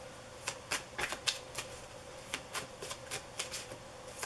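A deck of tarot cards being shuffled between the hands: a string of irregular light card flicks and slaps, about a dozen in four seconds.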